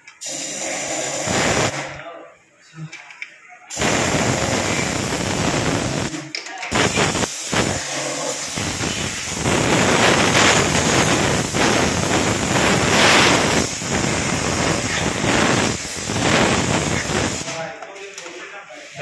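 Compressed-air spray gun hissing as it blasts cleaning spray onto the exposed clutch-side crankcase and gears of a motorcycle engine. Several short bursts come in the first seven seconds, then one long burst of about ten seconds that stops shortly before the end.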